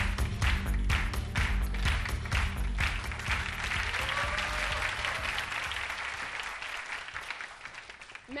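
Studio audience applauding over upbeat music with a heavy bass beat. The music fades out within the first few seconds, and the applause dies away toward the end.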